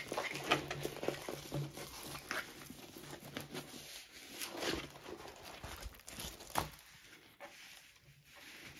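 Plastic-film-covered diamond painting canvas crinkling and rustling as it is rolled back on itself against a wooden tabletop to flatten it, with a sharper crackle near the end.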